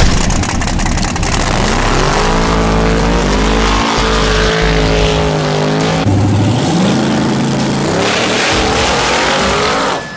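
Drag racing car engine at full throttle, its pitch rising as the car accelerates down the strip. A second rising run starts about six seconds in.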